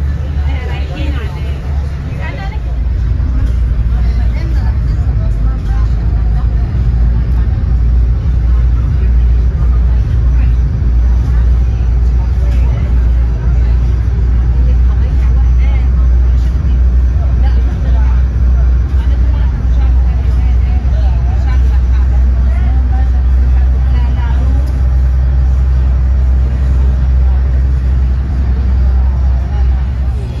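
Steady low rumble of a passenger ferry under way, getting louder about two and a half seconds in, with wind noise and the voices of other passengers.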